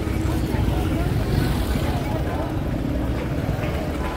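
Street crowd noise: indistinct voices of people walking, over the steady hum of traffic and motor scooters.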